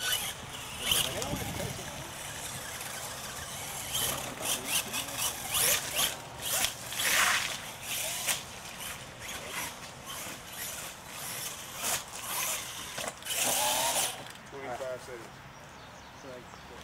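Radio-controlled monster trucks' electric motors and drivetrains whining in irregular throttle bursts as they churn through mud and water, with a few strong bursts and long stretches of lower running in between.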